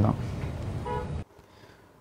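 A brief, faint horn toot over steady street background noise. The sound then cuts off abruptly to near silence a little over a second in.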